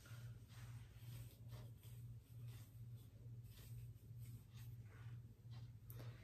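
Faint, repeated scratching of a plastic wide-tooth comb teasing hair at the roots, a short stroke every half second or so, over a low hum.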